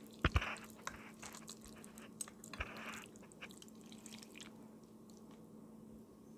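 A metal serving fork clicking and scraping against a pot while lifting moist sliced steak, with wet squishing of the meat. There is a loud knock near the start, a run of small clicks, and then it goes quiet after about three seconds.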